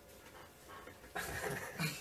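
A person laughing in short, breathy bursts, starting about a second in.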